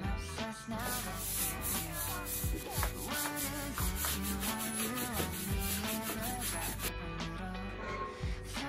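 Broom bristles sweeping a tiled floor in quick repeated scratchy strokes, over background music with a beat; the sweeping stops about a second before the end.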